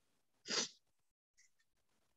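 A person's single short sneeze, about half a second in.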